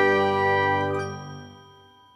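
A bell-like chime of several tones held together rings out and dies away, fading to almost nothing by the end.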